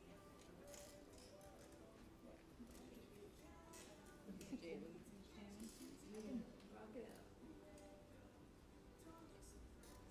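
Very quiet room with faint, indistinct voices, a little louder about four to seven seconds in, over faint background music and a few light clicks.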